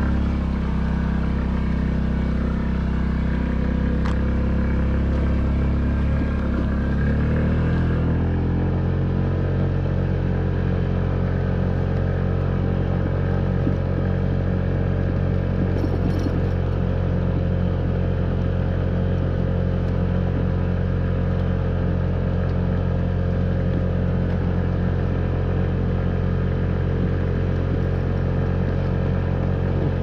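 Honda Ruckus scooter's 49cc single-cylinder four-stroke engine running steadily as it is ridden slowly over a rutted dirt track. Its note shifts about eight seconds in, then holds steady.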